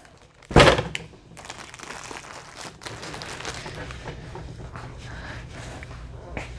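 A heavy thunk about half a second in, then steady rustling and small knocks of cardboard boxes and plastic-wrapped goods being handled and shifted.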